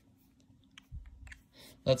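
Faint clicks and a soft low thump about a second in, as an iPhone 14 Pro Max is handled and set down on carpet; a man's voice begins near the end.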